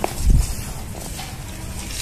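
Footsteps on a wet concrete floor: one soft thump about a third of a second in, then steady low noise.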